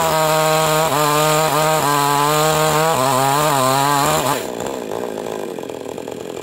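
Small two-stroke mini chainsaw held at full throttle while cutting through a fig-tree log, its engine pitch sagging briefly twice under the load. About four and a half seconds in the throttle is released and the saw drops to a lower, quieter idle.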